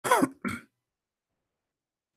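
A man's throat-clearing cough: two quick bursts in the first second, the first one longer and louder.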